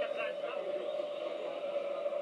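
Faint male voices from the football broadcast, over a steady background hum.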